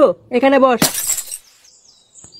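A cartoon voice says a few quick syllables, then a short crash sound effect full of high hiss cuts in just before the middle and lasts about half a second.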